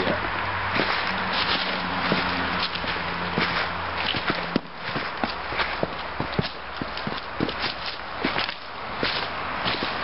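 Footsteps crunching through dry fallen leaves and gravel ballast as people walk along a railroad track, with irregular sharp crunches over a steady rustle.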